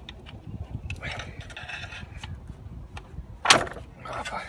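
Clatter of hand tools working on a car's clutch assembly, with one short, sharp knock about three and a half seconds in.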